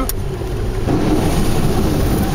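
Car engine and tyres rumbling as the car drives into standing water, heard from inside the cabin; from about halfway in, a rushing hiss of water spraying up over the windscreen and bodywork builds.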